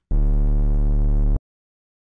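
Serum software synthesizer playing a deep sine-wave bass patch with tube distortion and chorus on: one loud, steady held note with a buzzy edge and a faint hiss on top, cut off sharply after about a second and a quarter.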